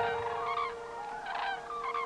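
A flock of common cranes calling in flight, several overlapping trumpeting calls, over held, steady musical tones.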